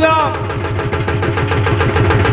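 Live music striking up as a man's voice trails off: a drum played in a fast, even beat over a steady low keyboard line.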